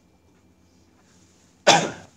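A man coughs once, short and sharp, about one and a half seconds in, after a stretch of faint room tone.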